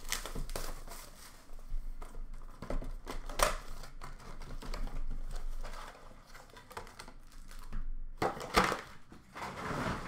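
Upper Deck hockey card box being opened by hand and its foil-wrapped packs pulled out and handled: irregular rustling and crinkling of cardboard and wrappers, with sharper clacks about three seconds in and again near the end.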